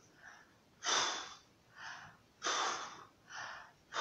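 A woman's mouth-made swimming breaths, puffing air out hard through pursed lips and drawing softer breaths in between, in a steady rhythm about three times over, miming a swimmer's breathing.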